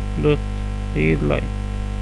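Steady electrical mains hum, loud and unchanging, running under two short spoken words.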